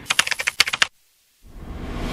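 A quick run of rapid, sharp clicks lasting under a second, then a brief dead silence, then a rising whoosh that begins about a second and a half in.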